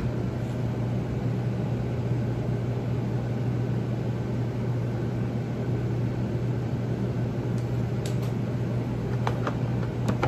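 Steady low hum with the rushing noise of running air from room ventilation, unchanging throughout. A few light clicks come near the end.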